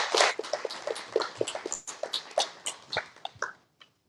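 Applause from a small audience dying away: scattered hand claps thinning out and stopping about three and a half seconds in.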